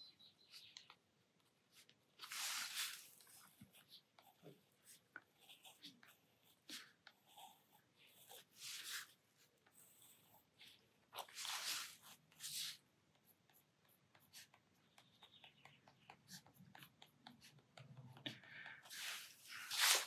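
White Uni-ball Signo gel pen scratching and dabbing on sketchbook paper in short, faint strokes, with a few louder bursts of scratching about two, nine and eleven to twelve seconds in.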